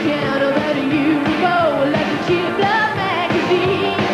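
Live pop-rock band playing, with a woman singing the lead vocal over drums and electric guitar.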